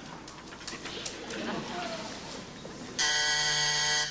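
A telephone call buzzer sounds once, a loud, steady, harsh electric buzz that starts abruptly about three seconds in and lasts about a second.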